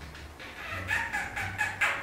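A person's high-pitched, rapidly pulsing laugh, starting a little under a second in.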